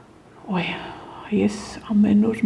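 Speech only: a woman's voice speaking softly, starting after a short pause about half a second in.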